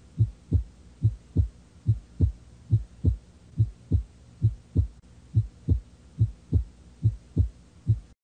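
Heartbeat: a steady lub-dub of paired low thumps, about seventy beats a minute.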